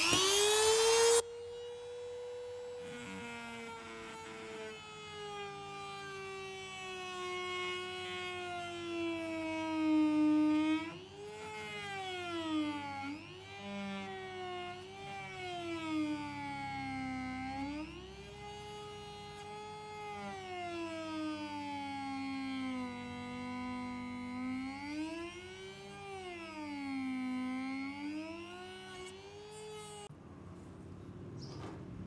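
Handheld electric rotary tool with a sanding drum whining as it grinds a die-cast metal model part. It spins up with a loud burst of grinding in the first second, then runs steadily, its pitch sagging and recovering again and again as the drum is pressed against the metal and eased off.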